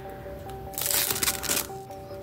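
Protective plastic film being peeled off the glass of a replacement car touchscreen: a crackly rustle lasting under a second near the middle, over quiet background music.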